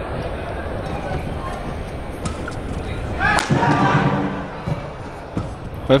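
Badminton rally in a large arena: sharp racket strikes on the shuttlecock over the steady noise of the crowd. A voice rises loudly over the crowd about three seconds in.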